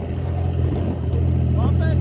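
Jeep LJ's 4.0-litre inline-six engine running steadily at low revs as it crawls over a rock ledge in low range.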